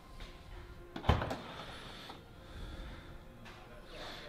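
Car boot lid unlatching with one sharp click about a second in, then swinging open, over faint room noise.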